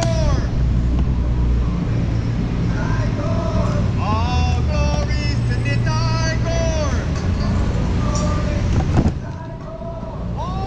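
Low rumble of wind and rolling noise from a bicycle ridden through a car park, with repeated short high squeals that rise and fall in pitch. The rumble drops away suddenly near the end.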